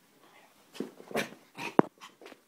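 Maltese dog at play during a bout of zoomies, making a run of short noisy huffs and scuffles, about four in the second half, the loudest a sharp click near the end.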